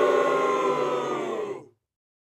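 A man's long drawn-out groan of disgust, held on one slightly falling pitch and fading out about a second and a half in.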